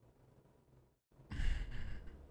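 A man sighing: one short breathy exhale, under a second long, starting about a second and a quarter in after a quiet pause.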